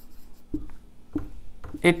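Marker pen writing on a whiteboard: a few short scratchy strokes over a faint low hiss, with a spoken word near the end.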